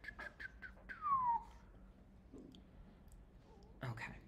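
A rapid run of light clicks, then about a second in a short squeak that falls in pitch; a low thump near the end.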